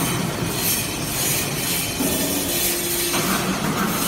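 Y83-6300 hydraulic briquetting press running: a steady hydraulic hum with high, squeal-like hiss over it. The hum changes pitch about two seconds in and again about three seconds in, as the press moves to the next stage of its cycle.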